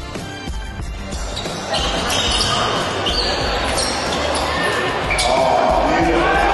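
Background music with a steady beat gives way about a second in to the live sound of a basketball game in a sports hall: high squeaks, ball bounces and voices, getting louder towards the end.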